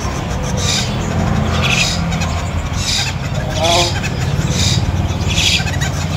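Cage birds chirping in short high bursts about once a second over a steady low rumble, with a short pitched, wavering call about halfway through.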